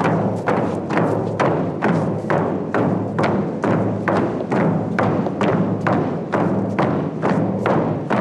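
Inuit frame drum beaten with a stick in a steady, even beat of about two and a half strikes a second, each strike ringing briefly.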